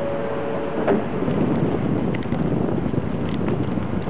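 Shinkansen 700 series trainset pulling out of the station: a steady rush of noise rises from about a second in as it gets under way. Just before, a held two-pitch electronic tone cuts off, followed by a single sharp knock.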